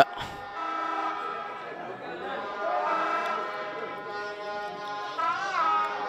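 Spectators at a football ground: several held notes overlap at a steady level, with a wavering call rising and falling about five seconds in.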